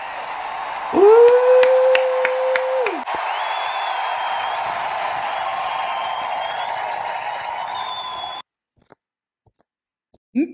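A woman's voice holding one long sung note for about two seconds over a crowd cheering and screaming. The cheering cuts off suddenly about eight and a half seconds in.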